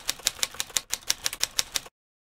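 Typewriter keys striking in a quick run of sharp clacks, about six a second, with a short break a little under a second in, stopping just before the end.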